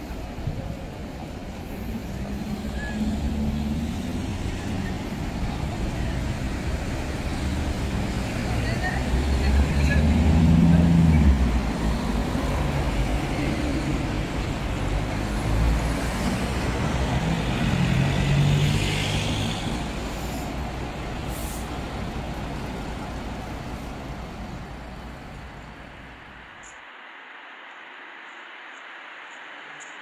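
City street traffic: buses and cars passing with a steady low engine rumble that swells loudest about ten seconds in and again a little later. People's voices sound around it. Near the end the rumble falls away to a quieter hiss.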